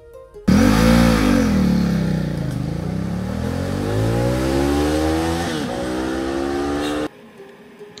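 Ducati XDiavel's 1262 cc L-twin engine pulling hard from a launch: it starts abruptly, the revs dip, then climb steadily, drop briefly at a gear change, and climb again before cutting off suddenly.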